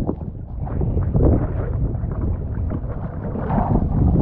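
Seawater splashing and sloshing around a mask-mounted action camera as it breaks the surface, with wind buffeting the microphone in an irregular low rush.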